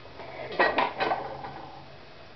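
A short clatter of hard objects knocking together, three quick strikes with a brief ring after each, about half a second in.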